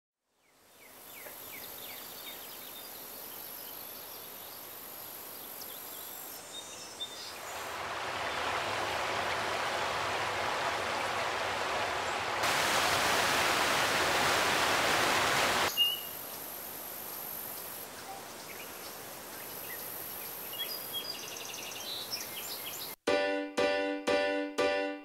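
Outdoor ambience with occasional bird chirps, then the steady rush of a shallow rocky creek running over stones, growing louder through the middle before it drops back to quiet birdsong. A plucked music track starts about a second before the end.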